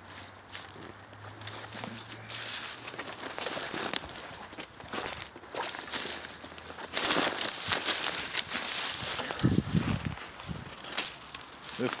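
Footsteps crunching and shuffling through dry fallen leaves and twigs, with brush rustling, in irregular bursts.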